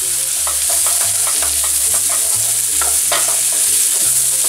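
Sliced asparagus stems, garlic and shallot sizzling in hot olive oil in a frying pan, stirred with a wooden spatula that knocks and scrapes against the pan in irregular clicks.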